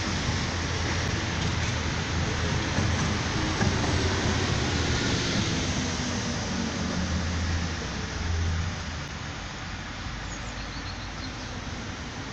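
Steady outdoor background noise: a low rumble with hiss over it, picked up by a phone microphone, the rumble easing and the noise growing a little quieter after about nine seconds.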